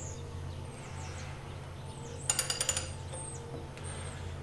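A ratchet wrench turning the crankshaft of a Willys F-134 Hurricane engine by hand, giving a quick run of about ten sharp clicks a little past halfway, over a steady low hum.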